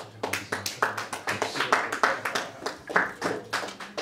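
A few people clapping their hands: a quick, irregular run of sharp claps that thins out near the end.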